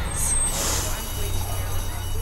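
School bus running with a low engine rumble, and a short hiss of air brakes about half a second in.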